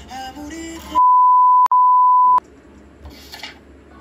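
A loud, steady electronic beep at one pitch, a pure tone like a censor bleep, lasting about a second and a half with a brief click-like break partway through. It abruptly cuts off a pop song with guitar and singing about a second in, and is followed by faint room noise with a short rustle.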